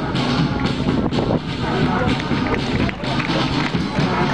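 Marching school brass band playing, with drums, and people's voices close by mixed in over the band.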